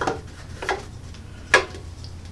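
Three short light knocks and clacks as paper notepads are pushed and settled against the back of a heavy-duty guillotine paper cutter. The loudest comes about a second and a half in.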